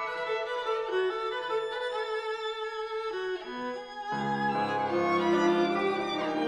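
Live piano trio music: a violin plays sustained high notes over a thin accompaniment. About four seconds in, lower instruments come in and the music fills out and grows louder.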